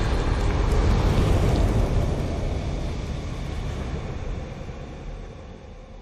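Deep, rumbling sound-effect tail of an animated fire logo intro, fading out steadily toward silence.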